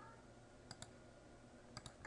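Near silence, broken by two pairs of faint, sharp clicks: one pair a little before halfway, the other near the end.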